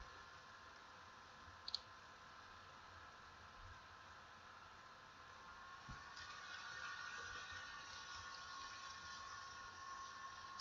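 Near silence: faint room hiss and hum, with a single short click just under two seconds in.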